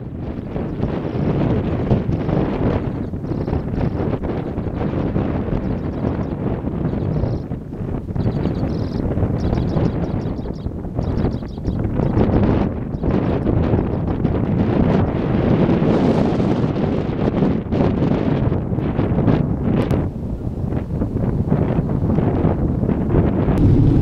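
Wind buffeting the microphone from a moving vehicle, with the low rumble of the vehicle driving on a gravel road. The gusting rises and falls throughout.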